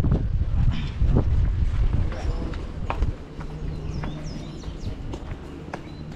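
Irregular footsteps on a hard floor as people walk out through a doorway, with group voices in the background. The steps and noise grow quieter after about three seconds.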